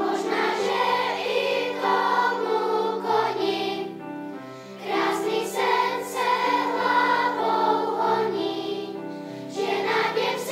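Children's choir singing in phrases, with a brief quieter dip between phrases about halfway through.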